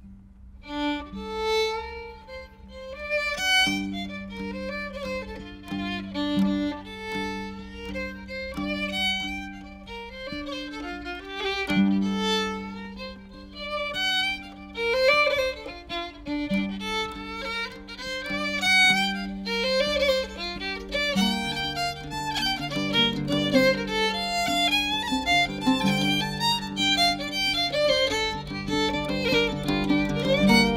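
Fiddle playing an Irish jig, the quick ornamented melody starting about a second in over a low held note, with a deeper accompaniment coming in about two-thirds of the way through.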